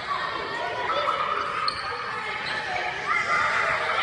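Many children's voices chattering and calling out at once, with a hall-like echo.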